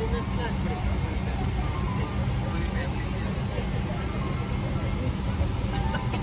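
Steady low rumble of a Boeing 777-300ER cabin at the gate, the cabin air-conditioning running, with faint, indistinct chatter of passengers boarding.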